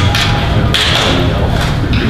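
Indistinct voices of several people talking at once, no single clear speaker.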